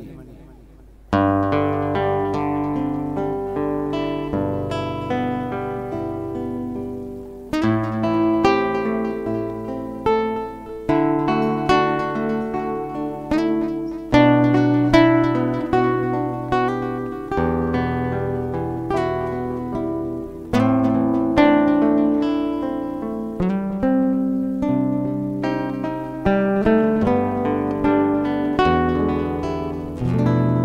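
Acoustic guitar playing a solo instrumental introduction to a song, plucked phrases with ringing bass notes. It enters about a second in and has new phrases struck every few seconds.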